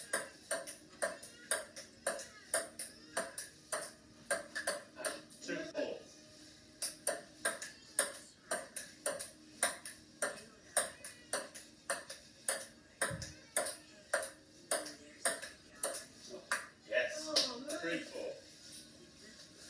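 Table tennis rally: a ping-pong ball clicking back and forth off the paddles and a wooden table, about two to three hits a second, with a short break about six seconds in.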